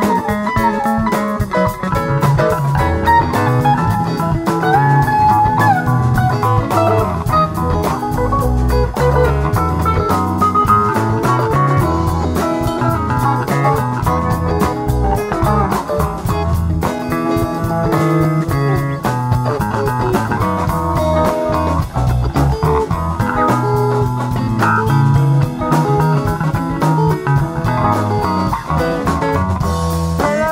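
Live rock band playing an instrumental jam: electric guitar lead lines over electric bass and drum kit.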